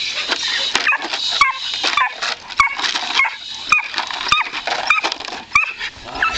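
Belgian Malinois puppy giving short, high-pitched yips and whines, each falling in pitch, about two a second, with a few sharp clicks mixed in.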